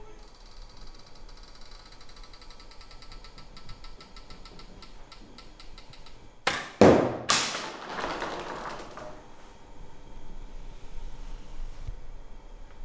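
A Japanese longbow (yumi) shot: faint rapid clicking and creaking while the bow is drawn and held at full draw. About six and a half seconds in comes the release, a loud sharp crack followed by more sharp cracks within about a second, ringing away in the hall.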